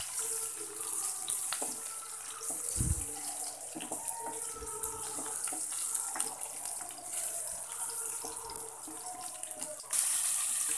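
Sliced onions frying in hot sunflower oil in an aluminium pot: a steady sizzling hiss, with light scrapes and clicks from a wooden spatula stirring them as they brown.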